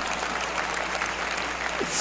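Audience applauding steadily, a dense even clatter of many hands clapping.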